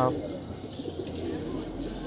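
Faint, low cooing of domestic pigeons over a quiet background.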